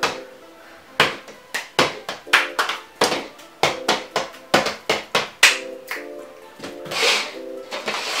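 Plastic cups being slid and set down on a wooden table during a shuffle: a quick, irregular run of light knocks, with background music.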